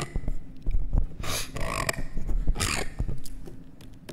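A man's breathing close to a podium microphone: two loud, sharp breaths about a second and a half apart, over low thumps.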